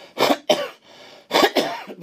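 An elderly man coughing: a quick double cough, then another cough about a second later.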